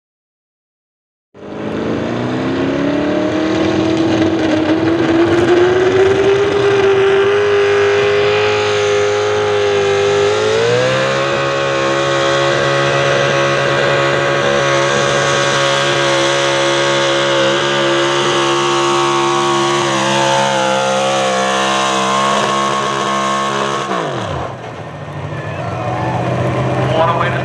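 Chevrolet pulling truck's engine at full throttle dragging a pulling sled, starting abruptly about a second and a half in, its pitch climbing slowly and then stepping up sharply about ten seconds in. It holds high and steady, sags in pitch as the truck bogs down near the end of the pull, then drops off when the throttle is closed and settles to a lower idle.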